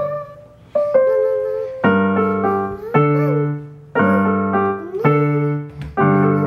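Casio electronic keyboard played with a piano voice: a slow melody over chords, a new chord struck about once a second and each fading away before the next.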